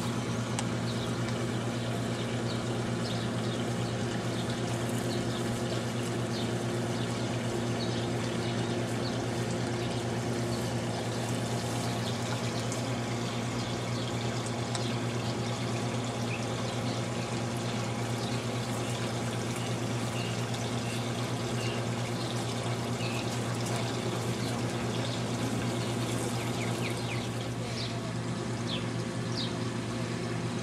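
Steady low mechanical hum with an even rushing hiss over it, unchanging throughout, with faint brief high chirps scattered through.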